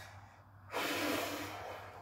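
A man's long, heavy breath out, starting under a second in and fading toward the end: he is winded after a set of push-ups.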